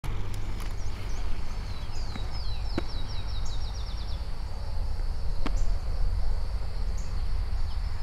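Outdoor ambience with a steady low rumble. A bird trills, a fast run of about a dozen descending chirps, from under two seconds in to about four seconds in, over a faint steady high tone. A few sharp clicks stand out, the last about five and a half seconds in.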